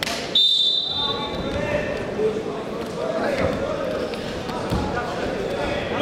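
Referee's whistle blown once, a steady shrill note about a second long, signalling the start of wrestling. It is followed by a murmur of voices in a large hall, with a few dull thumps.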